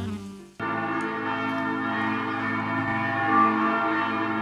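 Church bells ringing, several bells sounding together, coming in suddenly about half a second in as a saxophone phrase fades out.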